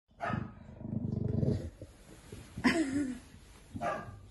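English bulldog growling and grumbling in several bouts. The longest is a low, rough growl about a second in, and a higher call that rises and falls comes near the end.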